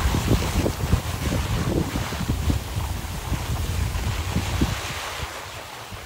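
Wind buffeting the microphone of a skier moving downhill, with the hiss of skis sliding over snow. It fades near the end.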